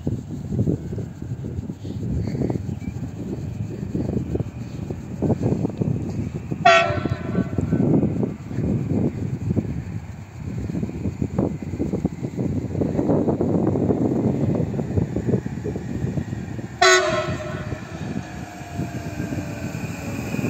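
An approaching Stadler electric multiple unit sounds its horn twice in short blasts, about ten seconds apart. The horn is a sign of greeting from the driver. Under the horn runs an irregular low rumble.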